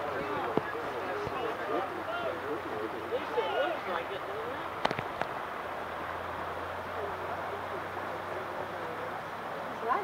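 Distant SUV driving slowly through a flooded road: a faint steady engine hum and the wash of water around it. Quiet voices can be heard in the first few seconds, and there are a couple of sharp clicks about five seconds in.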